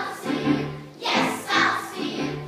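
A group of children singing together on stage, a chorus in short phrases with held notes.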